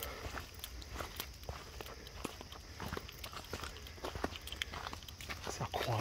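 Footsteps on a dry dirt trail strewn with fallen leaves: an irregular run of soft crunches and clicks over a low steady rumble.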